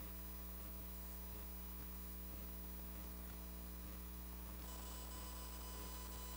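Faint, steady electrical mains hum with a low hiss from the room's idle sound feed. About four and a half seconds in, a few faint high steady tones join it.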